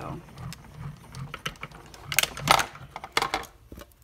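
Small hand-cranked die-cutting machine being cranked, drawing a sandwich of cutting plates, a steel die and cardstock through its rollers. An uneven low rumble runs for the first couple of seconds, then come several sharp clicks and clacks as the plates come through.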